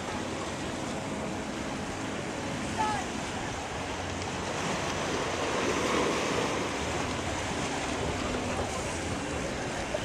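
Steady rushing noise of wind and sea water, with wind buffeting the microphone; a brief louder sound about three seconds in.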